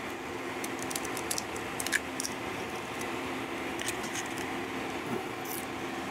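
An egg being cracked on a glass mixing bowl and emptied into cornmeal and buttermilk: a few light taps and clicks, the clearest about two seconds in, over a steady low hum.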